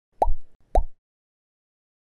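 Two short pop sound effects about half a second apart, each a click with a quick falling pitch, as social-media icons pop onto the screen.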